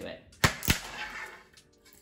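A thin wooden board struck with a bare-hand chop and snapping: two sharp cracks about a quarter-second apart, then a brief fading tail. The break shows the wood is not particularly strong.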